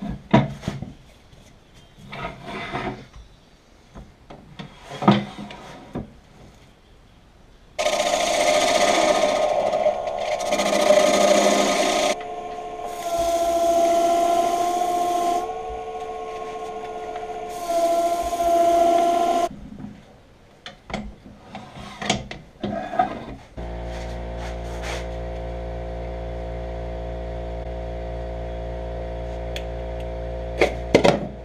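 Knocks and clicks as a walnut bowl is fitted onto a jam chuck on a wood lathe, then about twelve seconds of a turning tool cutting the bowl's foot on the spinning lathe: rasping cutting noise in several long bursts over a steady whine. Near the end more clicks, then a steady hum of several even tones.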